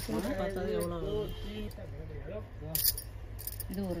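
Stacked bangles clinking and jangling together as they are worked onto a wrist, with a short bright jingle a little under three seconds in, amid women's voices.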